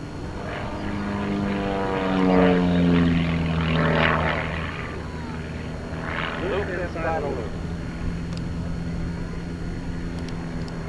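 Van's RV-4 light aerobatic plane's engine and propeller droning as it flies a smoke loop. The pitch falls over the first few seconds, and the sound is loudest a few seconds in, then settles to a steady drone.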